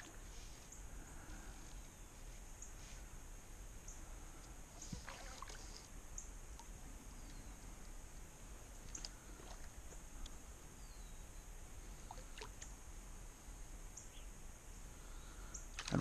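Faint creekside ambience with a few soft ticks and small water splashes as a small Guadalupe bass is played on a bent fly rod in shallow water.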